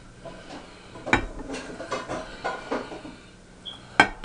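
Light scattered clicks and soft, moist handling sounds of food being handled over a plate. One sharper knock comes about a second in.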